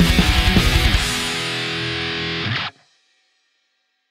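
Distorted electric guitar playing heavy metal. A fast, even chugging pulse gives way after about a second to a final held chord, which is cut off suddenly about two and a half seconds in as the song ends.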